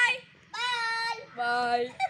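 Children's voices calling out in a sing-song way: two long held notes, the first about half a second in and the second just after it.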